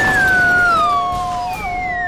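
Cartoon soundtrack effect: a whistle-like tone sliding slowly downward in pitch over a lower held tone.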